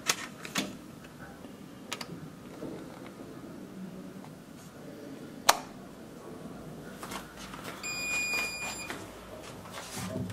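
Plastic wall rocker light switches clicking as they are pressed, a few light clicks and one sharp click about five and a half seconds in. Near the end a steady high electronic beep sounds for about a second.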